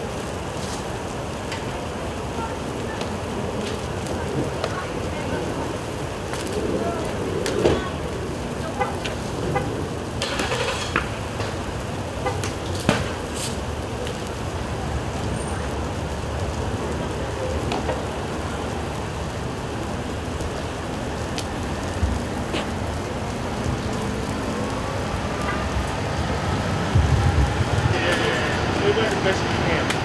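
A car burning, the fire crackling steadily with scattered sharp pops from inside the vehicle, the louder ones about eight and thirteen seconds in. Near the end a steady tone slowly rises in pitch.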